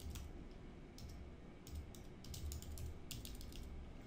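Faint typing on a computer keyboard: a string of irregular keystrokes as a few words are typed.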